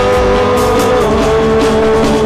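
Live worship band music: electric and acoustic guitars playing under one long held note, with a lower note joining about halfway through.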